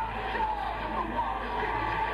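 Heavy metal band playing live: a distorted electric lead guitar plays bending, gliding notes over bass and drums. The recording is dull, with little treble.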